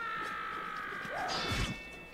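Anime film soundtrack: a long, high, held cry or tone that glides slightly in pitch, cut by a sudden thud about one and a half seconds in.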